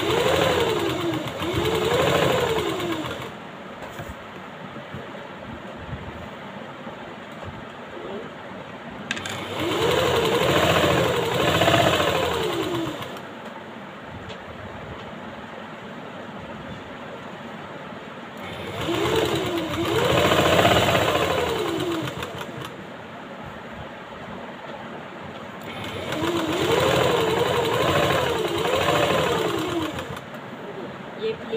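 Electric sewing machine stitching satin in four short runs of a few seconds each, the motor speeding up and slowing down within each run, with quieter pauses between runs.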